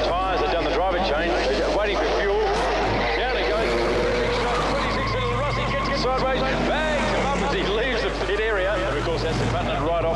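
Mostly speech: a man's voice talking throughout, over the steady sound of V8 Supercar race engines, with a constant low hum underneath.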